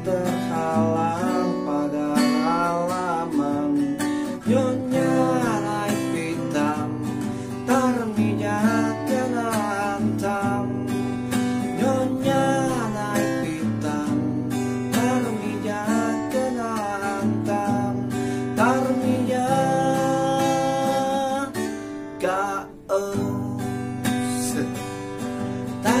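Strummed acoustic guitar with a man singing over it, the voice sliding between held notes.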